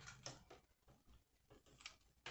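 Near silence, with a few faint short clicks and taps from hands handling craft pieces and a hot glue gun.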